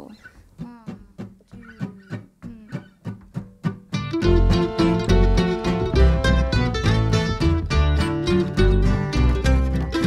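Acoustic string band playing a song intro: a single plucked string instrument picks a sparse line for about four seconds, then the full band of acoustic guitar, mandolin, fiddle and upright bass comes in, louder.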